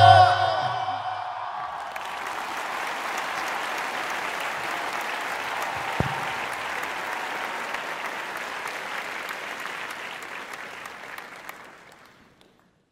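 The last notes of the qawwali music die away in the first second, then a large audience applauds, the applause slowly fading out near the end. A single brief thump comes about halfway through.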